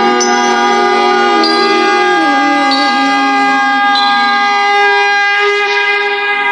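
Harmonium playing sustained chords of devotional music without singing, its upper notes stepping to a new pitch every second or so.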